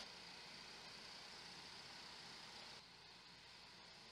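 Near silence: a faint steady hiss that drops even lower about three seconds in.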